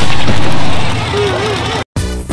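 A mud-bog truck's engine running loud as the truck rolls over in a mud pit, with people shouting over it. The sound cuts off abruptly just before the end.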